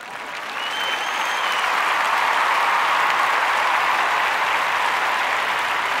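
Audience applause, fading in over the first couple of seconds and then holding steady, with a brief whistle about a second in.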